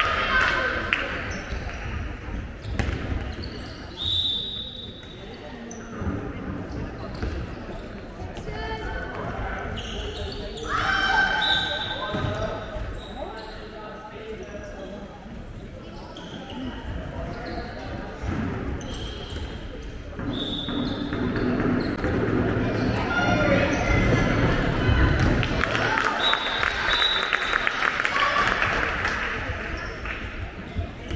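Handball being bounced and passed on a wooden sports-hall floor during play, with players' voices calling out and a few short high squeaks, all echoing in the large hall.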